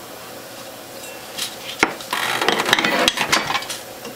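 A glass jar being set down and shuffled into place under a juicer's stainless steel grinder outlet. There is a sharp clink a little under two seconds in, then a couple of seconds of knocking and scraping, glass against metal and countertop.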